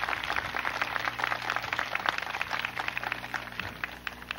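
Crowd applauding, many overlapping claps that thin out and die away near the end, over a steady low hum.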